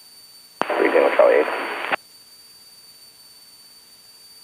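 A short aviation radio transmission over the headset: a click, then just over a second of brief radio speech, about half a second in. The rest is a low, steady background hiss.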